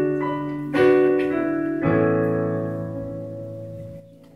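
Electric keyboard in a piano voice playing a slow introduction: chords struck about a second apart, each left to ring and fade away before the singer comes in.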